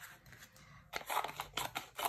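Small scissors snipping open a white mailer envelope: a quick run of short cuts that starts about a second in.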